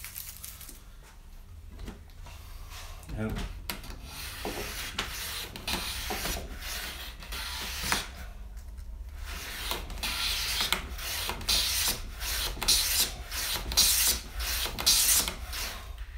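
Low-angle hand plane cutting thin shavings from a softwood board: repeated swishing strokes of the iron slicing wood and the sole sliding on the board. The strokes begin about three seconds in, pause briefly in the middle and are loudest in the last few seconds.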